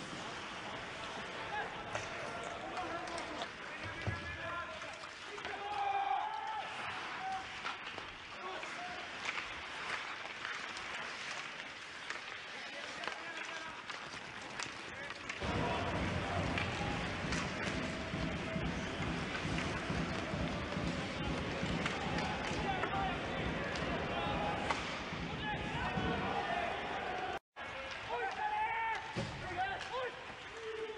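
Ice hockey game sound from a broadcast: sticks and puck clacking on the ice amid rink noise, with faint voices. About halfway through, the sound turns into a denser, fuller arena din, and it breaks off briefly near the end.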